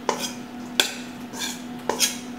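A metal spoon stirring olive-oiled pasta in a stainless steel mixing bowl, clinking sharply against the bowl three times.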